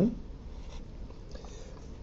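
Faint sound of a Sharpie felt-tip marker writing on a paper worksheet.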